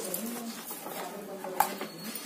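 A plastic box of sindoor containers being handled, with one sharp click about one and a half seconds in, against a faint low hum.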